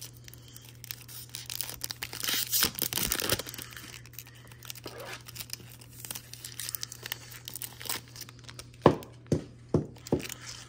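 Foil wrapper of a 2024 Topps Series 1 baseball card pack crinkling and tearing as it is opened, loudest a couple of seconds in, then quieter rustling as the cards are handled. A few sharp taps near the end.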